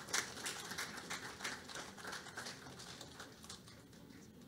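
Audience applauding: a patter of scattered claps that thins out and fades.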